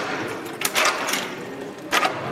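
Irregular sharp clicks and knocks, a mechanical clatter, with a longer rustling burst a little under a second in and a louder click near the end.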